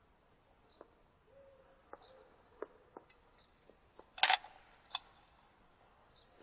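Steady, high-pitched chirring of crickets in the night air, with a few faint clicks and one brief louder sound a little past four seconds in.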